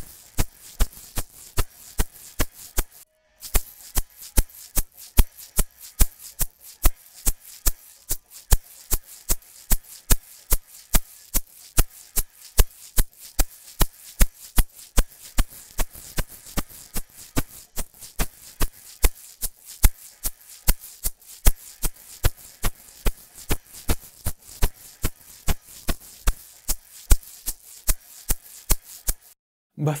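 Recorded egg-shaker percussion track playing back in a steady rhythm of sharp hits, about three a second, processed through the Crane Song Peacock vinyl-emulation plugin with Harmonic at maximum and the Dynamic control turned up to full. The Dynamic control moves the added harmonics ahead of the notes, which makes the percussion feel heavier and a little dragging to the engineer. Playback stops briefly about three seconds in, then resumes and stops just before the end.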